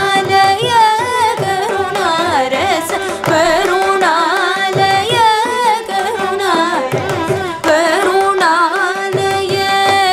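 Carnatic vocal music: female voices sing a richly ornamented melody with constant slides between notes, over a steady drone note. A mridangam, the two-headed barrel drum, adds short strokes.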